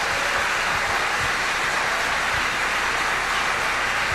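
Steady, even hiss-like background noise with no distinct events, holding at one level throughout.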